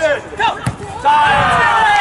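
Men shouting on a football pitch, the voices loudest from about a second in. A football is struck once just over half a second in, a single sharp thud.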